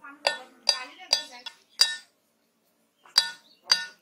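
A broad-bladed chopping knife striking a green coconut's husk, each blow a sharp hit with a short metallic ring. There are five quick chops, a pause of about a second, then two more.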